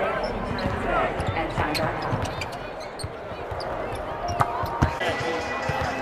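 Basketballs bouncing on a hardwood court, a series of irregular single bounces over a murmur of voices in a large arena.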